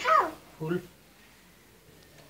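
A short animal call falling in pitch, followed about half a second later by a brief low voice sound.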